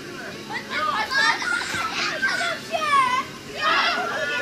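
Young children shouting and calling out in high, overlapping voices while playing a football match, with a louder burst of calls near the end.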